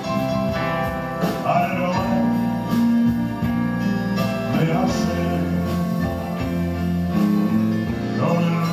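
Live band music: electric guitar, bass guitar and drums with a male lead vocal.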